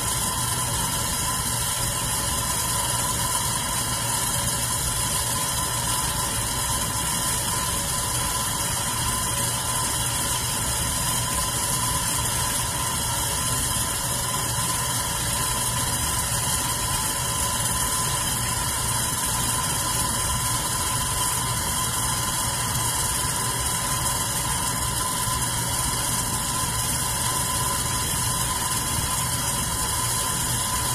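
Red metal electric fan running steadily: an even motor hum with the rush of moving air.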